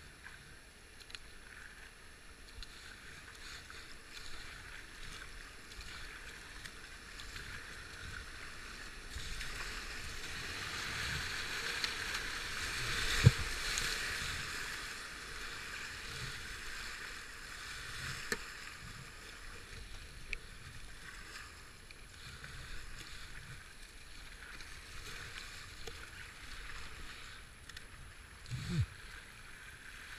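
Rushing whitewater and paddle splashes from a river kayak running a rapid, the rush swelling through the middle of the run. A sharp knock comes near the middle and another a few seconds later.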